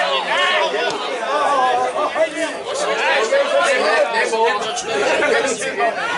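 Several people talking over one another close to the microphone: spectators' chatter beside the pitch.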